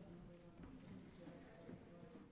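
Near silence in the hall: faint room tone with a few soft taps of footsteps.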